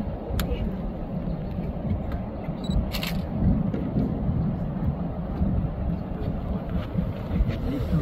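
Steady low rumble of a tour boat underway on the river, its motor and the wind on the microphone, with a couple of brief clicks about half a second and three seconds in.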